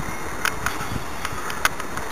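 Steady outdoor background noise with about four brief sharp clicks scattered through it.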